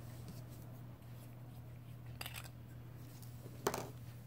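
Two short rustles of paper being handled, a hand touching a notebook page, the second near the end sharper and louder, over a steady low hum.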